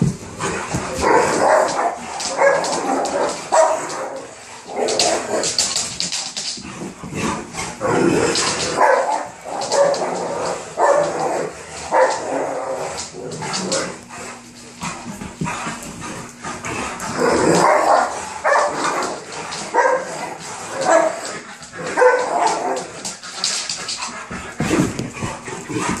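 A Great Dane and a second dog play-fighting, barking in repeated short bursts throughout. Paws and claws scrabble and knock on the floor in quick clicks.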